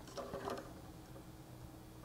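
Faint small clicks and handling noises of wire ends being pushed into the spring-loaded terminal clips of a circuit board, mostly in the first half-second.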